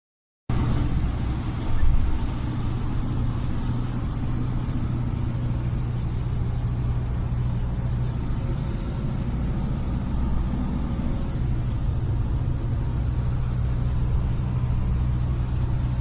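Steady low engine and road rumble heard inside a coach's passenger cabin, with one brief louder bump about two seconds in.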